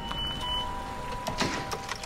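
A car moving, an even rumble and rustle with a few clicks, under a sustained drone of dramatic score.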